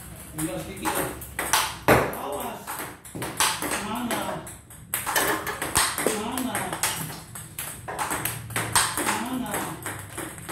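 Table tennis rally: the ball clicks sharply off the paddles and the table, a hit roughly every second, during forehand stroke practice.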